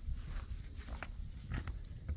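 Wind rumbling unevenly on the microphone, with a few light footsteps on stone.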